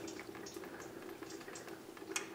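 Faint, irregular dripping of automatic transmission fluid from the transmission pan's open drain-plug hole into a catch pan.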